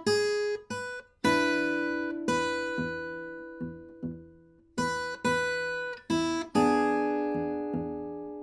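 Acoustic guitar played fingerstyle: a blues tune with the thumb doubling up the bass in a shuffle feel, each melody note pinched together with a bass note. Chords and melody notes ring out and die away over the steady bass.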